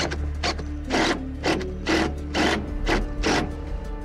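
Cordless impact driver driving wood screws into a pine board, in short mechanical bursts, over background music with a steady beat.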